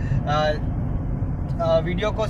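Steady low rumble of a moving car's road and engine noise heard inside the cabin, under two brief fragments of a man's voice.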